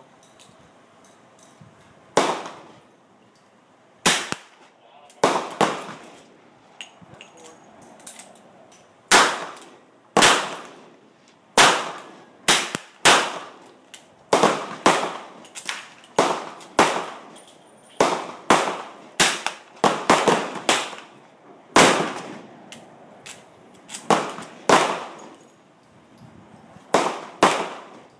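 Rifle and handgun shots on a shooting range firing line: about two dozen sharp reports at irregular intervals, some close together and some seconds apart, each dying away over about half a second. Among them are the shots of a .357 Magnum lever-action saddle rifle.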